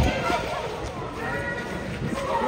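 Several voices talking and chattering at once, with no single clear speaker, and a low rumble right at the start.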